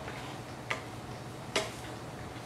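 Two short, sharp clicks about a second apart, the second louder, over a steady low room hum.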